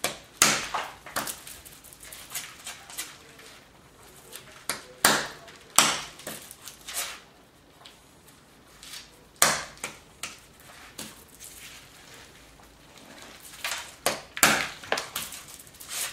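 Hammerstone striking a small flint core held on a stone anvil in bipolar knapping: sharp stone-on-stone cracks, in groups of two or three with pauses of a few seconds between, as the core is split into long, skinny flakes.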